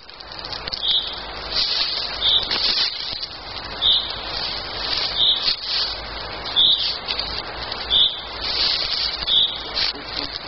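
A bird repeats a short high call about every second and a half, with other high birdsong behind it.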